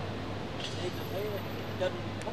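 Sports-hall ambience during a bout: a steady low hum with faint, distant voices calling out, and a brief sharp noise near the end.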